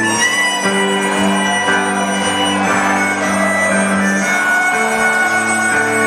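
A live rock band playing, with an electric guitar and steady held notes changing every second or two, loud and even throughout.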